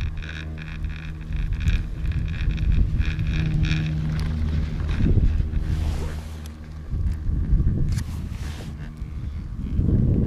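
Chairlift haul rope running over a lift tower's sheave wheels: a steady low mechanical hum with a rhythmic clatter in the first few seconds, the hum cutting off about seven seconds in. Wind buffets the microphone, loudest near the end.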